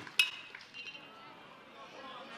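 A baseball bat hits a pitched ball about a fifth of a second in: one sharp, metallic ping with a brief ring. A faint crowd murmur follows.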